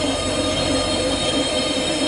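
A steady high-pitched whine over a low, even rumble of background noise.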